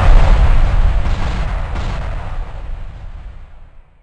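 Outro-animation sound effect: a loud, deep cinematic boom rumbling on after a sudden hit, fading out slowly over about four seconds.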